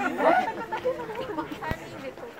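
Chatter of several people talking at once, with one short sharp click near the end.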